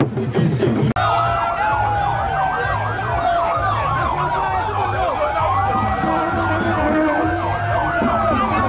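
Drumming for about the first second, then, after a cut, several police sirens sounding at once: one yelping rapidly up and down while another wails slowly down and back up. Crowd voices underneath.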